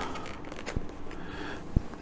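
Faint handling noise of a plastic model car seat and its rubber cover being worked by hand, with two small clicks.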